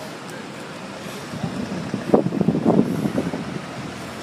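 Town-centre traffic noise with a motor vehicle going by, louder for a second or two in the middle, over a steady background hum.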